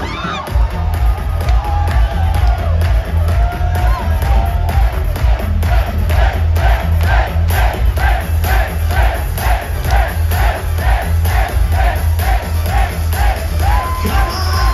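Loud live pop-rock concert music over a PA with a heavy bass beat, recorded from inside the crowd. From about five seconds in, short chanted shouts come in time with the beat, about two a second.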